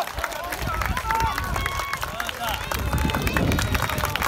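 Football supporters' crowd chatter, many voices overlapping, with scattered hand clapping.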